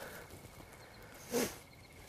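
A hunter's footsteps through the woods, with one short sharp crunch or rustle about one and a half seconds in.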